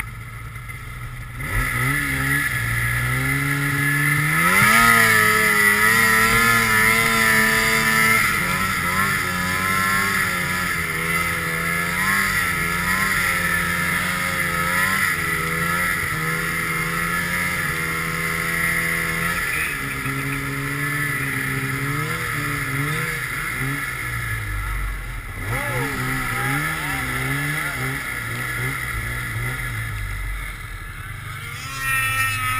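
Polaris RMK mountain snowmobile's two-stroke engine revving up about a second and a half in, then held at high revs with repeated rises and falls in pitch as the throttle is worked through deep snow.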